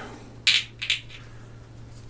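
Small plastic miniature parts scraping and clicking against each other as an arm is test-fitted to a figure's body: two short scratchy sounds about half a second apart in the first second.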